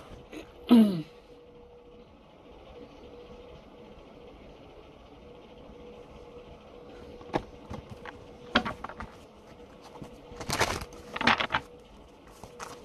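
A person clears their throat once, just under a second in. After that there is quiet room hiss with a faint steady hum, broken in the second half by a few short sharp clicks and rustles. The loudest cluster of these comes near the end.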